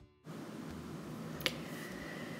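A single light tap about one and a half seconds in, over faint room noise: a paper artist trading card being set down on a plastic cutting mat.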